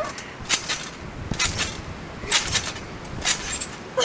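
Trampoline springs and mat creaking and clanking with each bounce as a child jumps, in pairs of sharp sounds about once a second.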